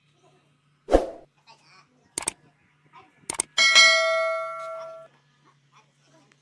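A dull thump about a second in and a few sharp knocks, then a loud clang of struck metal that rings on with several clear tones for about a second and a half before dying away.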